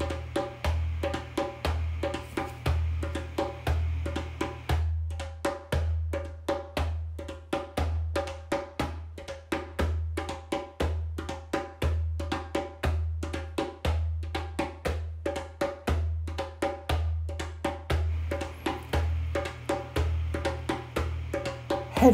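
Steady rhythmic percussion music: a fast, even beat of sharp, clicky strikes over a slower, deep drum pulse that repeats throughout.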